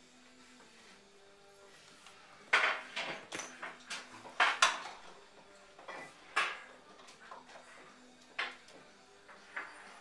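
Knocks, clicks and rattles of a new coffee maker's parts being handled and fitted together. The sharp knocks start about two and a half seconds in, over faint background music.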